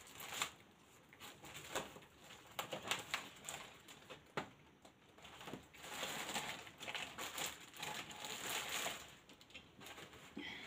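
Paper and card being handled: scattered light rustles and taps, with a longer stretch of rustling about six to nine seconds in.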